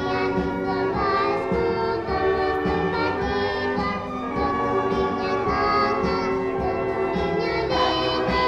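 A children's choir singing with a live orchestra accompanying them.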